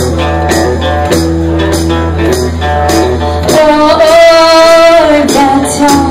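Live bass and electric guitar playing a blues-rock tune with a steady beat. Past the middle the bass drops out under one long, high sung note, then comes back in.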